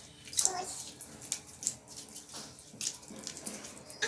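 Slime being squeezed and stretched by hand: an irregular run of wet squelches and crackles. A short child's vocal sound comes about half a second in.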